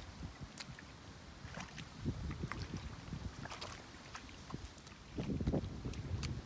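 Wet paddy mud and water being scooped and pressed onto a rice-paddy levee with a hand tool during levee plastering (aze-nuri): irregular wet sloshes and scrapes, loudest about five seconds in.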